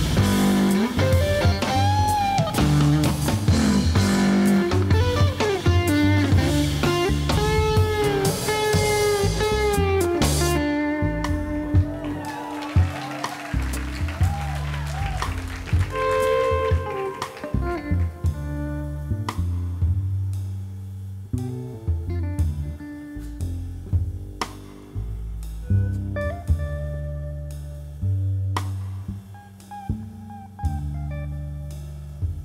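Jazz trio of electric guitar, upright double bass and drums playing live. The drums play busily with cymbals until about ten seconds in, then drop out, leaving guitar and bass with only occasional light drum hits as the music grows gradually quieter.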